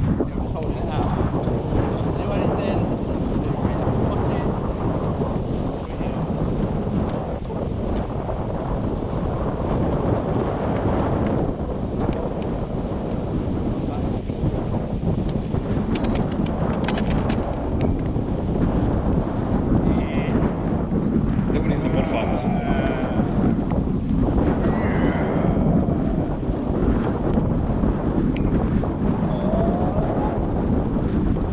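Strong wind buffeting the microphone of a camera riding on a moving kite buggy, giving a steady, loud rushing noise. Faint voice-like calls come through it for a few seconds in the latter half.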